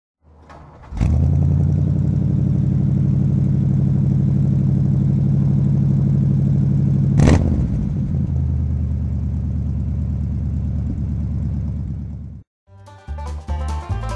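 Car engine starting about a second in and idling steadily with a deep rumble, with one sharp throttle blip about seven seconds in; it cuts off suddenly near the end, and banjo music begins.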